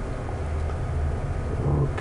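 A steady low hum with a faint even hiss underneath, and no distinct events.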